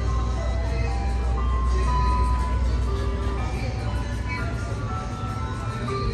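Ice cream truck jingle playing a simple chime melody, one note at a time, over a steady low rumble.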